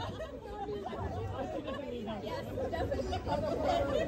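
Background chatter of people talking, with the voices indistinct and fairly quiet.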